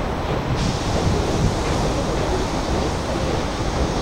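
Steady outdoor noise with a heavy low rumble, typical of wind buffeting the microphone over distant city traffic. A brighter hiss comes in about half a second in.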